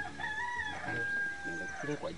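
A rooster crowing once: a stepped rising opening followed by a long held final note that lasts most of two seconds.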